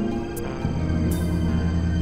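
Layered experimental electronic music built from low, sustained synthesizer drones; a deep drone fills in about half a second in and holds steady, with a short burst of hiss about a second in.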